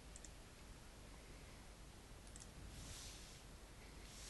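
Faint computer mouse clicks over near-silent room tone: a pair right at the start and another pair a little over two seconds in, followed by a soft hiss.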